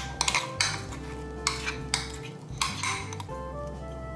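A metal spoon scraping and clinking against glass bowls while sticky yeast starter is scooped from one bowl into another, with a string of short knocks in the first three seconds. Soft background music plays underneath.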